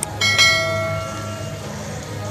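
A mouse-click sound effect followed by a bright notification-bell ding that rings out and fades over about a second: the sound of a subscribe-button animation.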